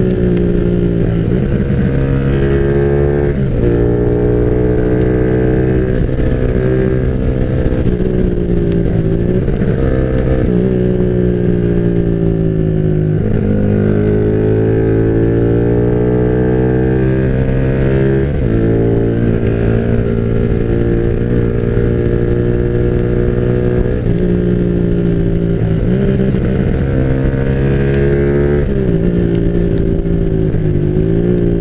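Onboard sound of a Yamaha Jupiter MX underbone motorcycle's single-cylinder four-stroke engine, bored up to 177 cc with a 62 mm piston, running under way. The note climbs with the revs and drops sharply several times as the bike pulls along.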